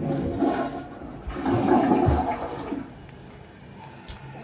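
A toilet flushing: a rush of water that swells twice and then dies away.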